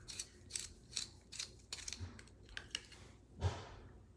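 Light, quick clicks and taps of makeup tools and containers being handled, about a dozen small sharp sounds, with one louder thump near the end.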